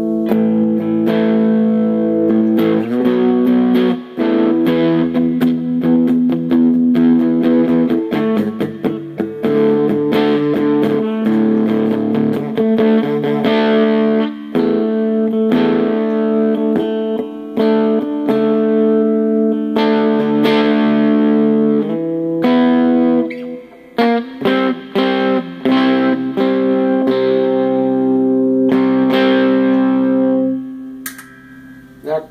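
Electric guitar played through a Gorilla GG-110 solid-state amplifier with its Tube Crunch circuit turned all the way up, giving distorted sustained chords that ring out. The playing stops briefly a few times between phrases.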